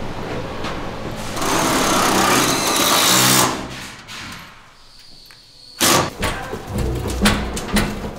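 A handheld power drill whirs as it drives into a prop. About six seconds in comes a sudden loud start, followed by a run of sharp clanks and rattles as a manual pallet jack is hauled along with props on metal racks.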